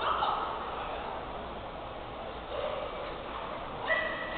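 Crowd noise echoing in an indoor sports hall: spectators shouting and calling out over a general murmur, the shouts loudest at the start. A short high tone sounds near the end.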